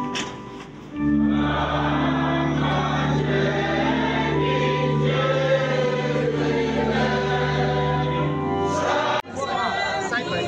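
Congregation and choir singing a hymn over steady held bass notes from a keyboard. About nine seconds in, the sound cuts abruptly to a choir singing unaccompanied.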